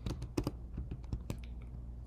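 Computer keyboard keys clicking in a quick, uneven run of keystrokes as a word is typed.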